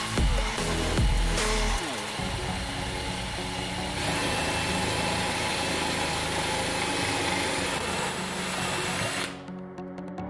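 Cordless drill boring a hole through a small metal bracket, running steadily for several seconds and stopping shortly before the end, under electronic background music.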